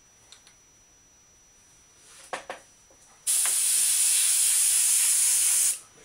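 Airbrush spraying paint in one steady hiss of about two and a half seconds, starting a little past halfway and cutting off sharply. It is a test burst to clear the previous blue and make sure the translucent purple is coming through. A couple of light clicks come before it.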